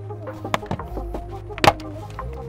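Background music with held notes, over a few sharp plastic snaps from the Lexus IS's front door sill scuff plate being popped off its clips by hand, the loudest snap about a second and a half in.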